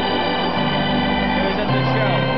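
Stadium organ playing a tune in sustained, held chords, moving to new notes about half a second in and again near the end.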